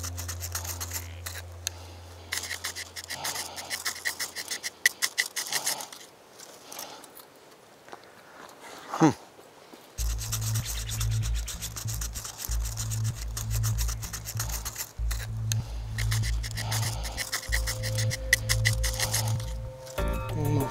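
A steel knife scraped in quick repeated strokes down a ferrocerium flint striker to throw sparks into tinder, in runs with pauses between them. Background music underneath, with low steady notes coming in about halfway.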